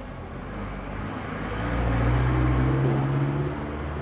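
A motor vehicle passing by: its low engine hum swells to a peak about halfway through, then fades.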